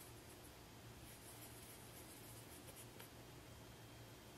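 Near silence: faint, scratchy rubbing of a fingertip swiping across pressed eyeshadow pans, over a low steady hum.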